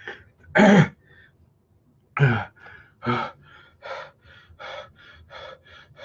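A man gasping loudly twice, then panting in quick, short breaths through the mouth, about three a second: the sound of someone suffering the burn of an extreme hot sauce.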